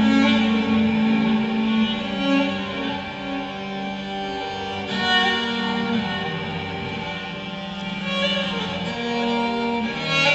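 Instrumental music made of long held notes, with a new chord or phrase entering about halfway through and again near the end.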